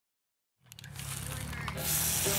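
Faint outdoor background rumble fading in from silence with a few light clicks, then an aerosol spray paint can starting to hiss near the end.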